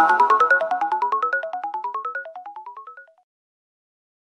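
Short musical logo jingle: a rapid string of bright single notes, about eight to ten a second, in repeated rising runs that fade away and stop about three seconds in.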